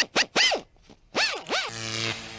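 Electric-spark sound effects for a neon sign lighting up: a quick string of short crackling zaps, some sweeping up and down in pitch. Near the end a steady electrical hum sets in.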